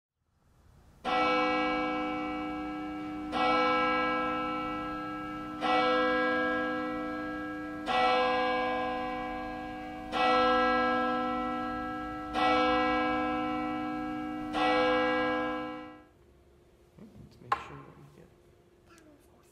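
A single church bell tolling seven times, one strike about every two and a quarter seconds, each ring dying away before the next. The last toll fades out about two seconds before the end, followed by a brief sharp click.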